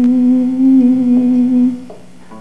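A man's voice holding one long vocal note, steady in pitch, which stops near the end.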